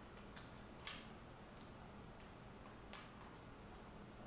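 Faint, scattered clicks and light taps of a plastic holster's belt clip being handled as its locking lip is bent in over the belt, with the clearest click about a second in.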